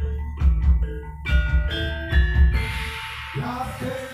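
Jaran kepang dance accompaniment: heavy drum beats about twice a second under ringing mallet-struck tones. About two and a half seconds in the beats stop and a brighter, noisier wash takes over.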